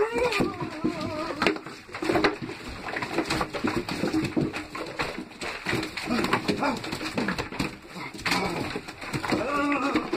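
A person's wordless voice sounds, hums and sighs, going on and off, with scattered clicks and knocks from handling.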